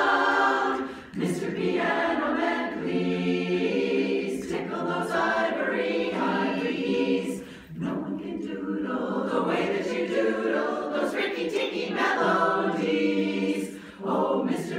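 Women's chorus singing unaccompanied in harmony, with brief breaks between phrases about a second in and near eight seconds.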